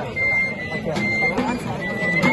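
Txistu (Basque three-holed flute) playing long, high, pure notes with slight changes of pitch, alongside tamboril drum strokes, over crowd chatter.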